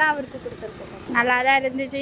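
A woman speaking after a pause of about a second, with faint background noise during the pause.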